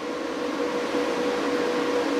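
Steady electrical hum with one held tone over an even fan whir, from running solar inverters and their cooling fans.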